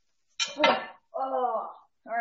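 A spatula clinking and scraping against a glass baking dish as a stuffed chicken roulade is lifted out, a cluster of sharp clinks about half a second in. A short wordless vocal sound follows just after.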